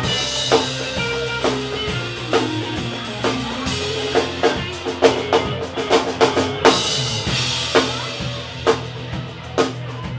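Live band playing an instrumental passage on drum kit, electric guitars and bass guitar, with sharp snare and bass drum hits standing out over sustained guitar notes.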